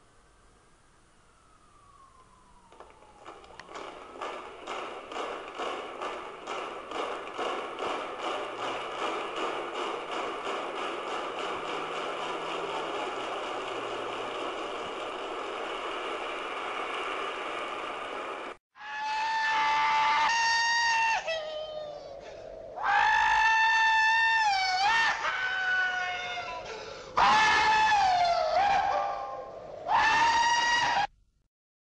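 A dense crowd roar with a regular pulsing beat, like cheering with clapping, swells in and then cuts off abruptly. After the cut a man gives four long, high whooping yells, each bending in pitch at its end, a cowboy-style whoop.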